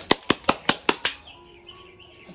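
A fast, even run of sharp clicks, about five a second, that stops about a second in, leaving faint steady tones.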